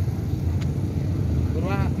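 Steady low rumble of vehicles on the road, with a voice starting to speak near the end.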